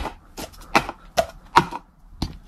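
Black plastic sport-stacking cups clacking against each other and the wooden floor as they are stacked at speed into a pyramid: a quick run of sharp clacks, about two or three a second.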